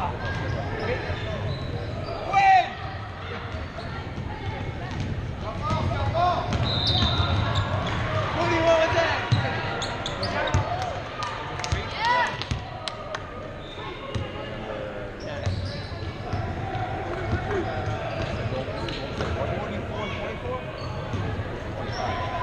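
A basketball being dribbled on a hardwood gym floor, with a run of bounces about halfway through, under echoing voices and shouts from players and spectators.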